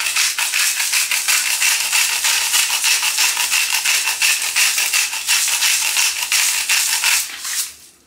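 Hand grinder of pink salt being twisted: a steady, fast crunching rasp of salt crystals being ground, stopping shortly before the end.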